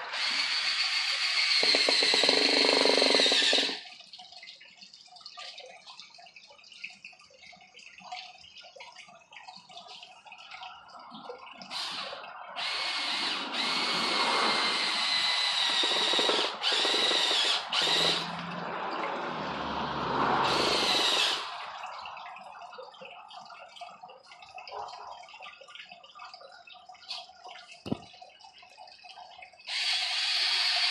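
Cordless drill running in bursts as it bores into a wooden board, with a steady high motor whine. There is a run of about four seconds at the start, a longer run of about five seconds in the middle with a few short stops, and a brief one about a second long later. Quieter handling noise fills the gaps.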